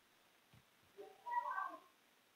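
A faint, brief, high-pitched animal call about a second in, lasting under a second.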